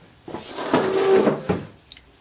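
A desk drawer sliding shut: a rushing slide of about a second ending in a knock, followed by a small sharp click near the end.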